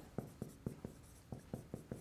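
Marker writing on a whiteboard: a series of short, uneven strokes and taps as letters are written.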